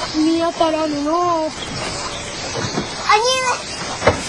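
A high-pitched voice calling out for about a second, then a second, shorter call with rising pitch near the end, over faint background noise.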